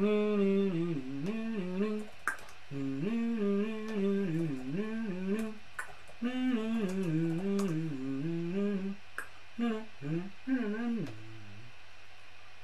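A man humming a tune in a few phrases with short breaks between them, with a few sharp clicks of laptop keys.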